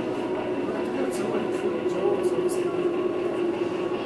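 A steady low hum with several held tones, with faint voices in the background and a few short hissing sounds.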